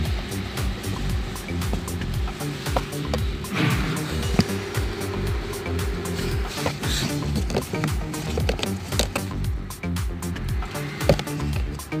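Background music with a repeating low beat.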